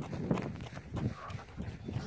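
Irregular soft steps and rustling, several a second, close to a hand-held phone as a child walks with it.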